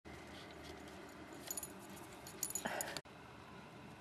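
A dog's metal collar tags jingling as it moves through deep snow: a few light jingles about one and a half seconds in, then a busier, louder jingling that cuts off suddenly about three seconds in.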